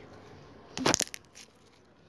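Glue-and-detergent slime squeezed and pressed with the fingers, giving a short run of crackling pops and clicks about a second in, with a couple of fainter clicks after.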